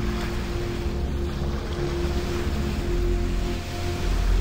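Surf washing onto a beach, a steady rushing noise, with a faint low tone held steadily underneath.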